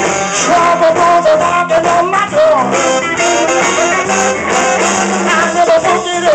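Live blues band playing, electric guitars, bass guitar and saxophone, with a lead line that bends up and down in pitch.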